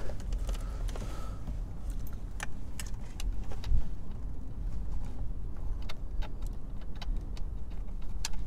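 Scattered light clicks and small metallic rattles of hand work in the open hub of a steering wheel, as the wheel's retaining nut is fitted onto the steering shaft.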